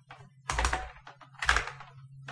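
Computer keyboard typing: two short bursts of keystrokes, about half a second and a second and a half in.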